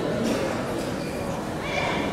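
Voices shouting and calling out over the background chatter of a hall, with a short high-pitched call near the end.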